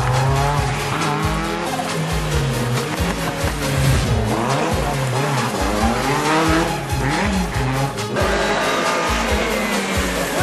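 Rally car engines revving hard on a stage, the pitch climbing and dropping again and again with gear changes and lifts off the throttle, with a few short sharp pops.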